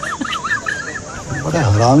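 Fake wet fart sound effect played as a prank: a high, wavering squeak for the first second, then a lower, longer wobbling blast from about a second and a half in.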